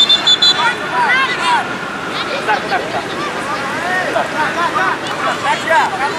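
A short, steady whistle blast at the very start, a referee's whistle, over the constant high-pitched calling and shouting of many children's voices.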